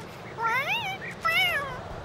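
Cartoon cat meowing twice, two rising-then-falling cries of distress.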